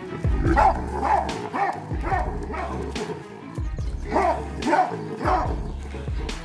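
Baboons giving short, sharp alarm barks, about two a second in two runs with a short gap between them, over background music with a heavy bass beat.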